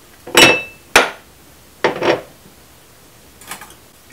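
A metal cocktail mixing tin and bar items being handled and set down on the bar top: sharp clanks, the first with a brief metallic ring, then more knocks about a second apart and a faint one near the end.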